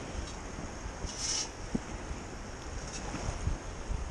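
Wind buffeting the microphone over water swirling around legs wading in shallow bay water, with a brief brighter hiss about a second in.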